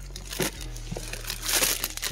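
Cardboard boxes and clear plastic packaging rustling and crinkling as they are handled and shifted, with a louder patch of crinkling about a second and a half in.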